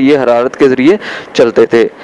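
A man's voice narrating a lecture. Nothing but speech is heard.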